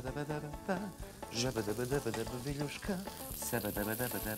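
Meatballs sizzling as they fry in hot oil in a frying pan, with background music playing over it.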